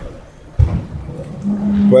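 A man's drawn-out hesitation sound, a steady held 'mmm' on one pitch, starting about one and a half seconds in, after a brief low thump about half a second in.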